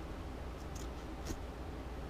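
Fabric scissors cutting through the frayed edge of denim: two short snips a little way into the stretch, the second the louder.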